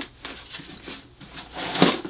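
Snowboard boot liner being pulled out of its shell: soft rustling and scuffing of padded fabric and foam against the boot's outer, with one louder, longer scrape near the end.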